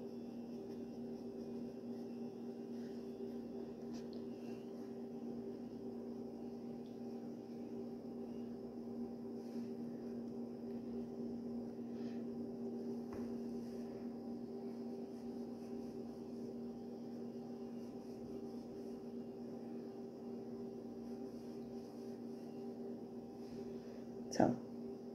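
A steady low hum, unchanging throughout, with a few faint soft ticks now and then.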